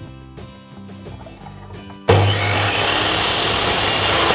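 Soft background music, then about two seconds in an electric miter saw starts abruptly and runs loud, its blade cutting through a wooden bar.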